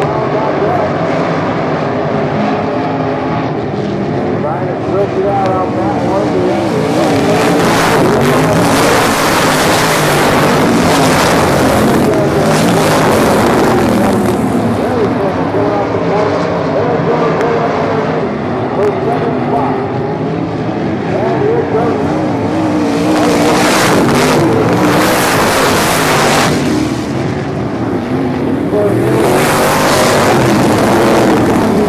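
Methanol-fuelled sprint car engines running as the cars circle the dirt oval. The sound swells twice as cars pass close by, about a third of the way in and again near the end.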